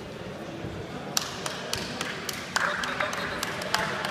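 Hand clapping: sharp claps about three a second, starting about a second in, over a murmur of voices.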